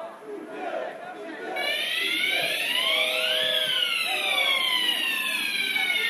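A siren sounds once, starting about a second and a half in. Its pitch climbs for about two seconds and then slides slowly back down, over crowd chatter.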